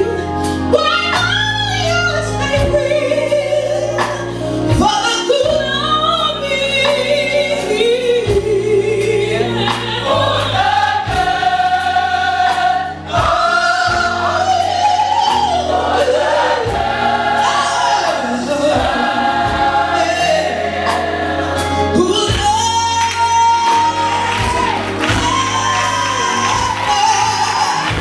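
Live gospel music: a female lead singer on a microphone with a choir singing behind her, over instrumental backing with a bass line and a steady beat.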